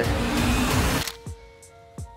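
Movie-trailer sound design and score: a loud, noisy rush for about the first second, then a quiet, tense held chord of steady tones.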